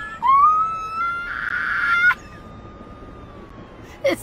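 A man's high-pitched squealing laugh: one long squeal, rising in pitch, for about two seconds, breathier near its end, then it breaks off.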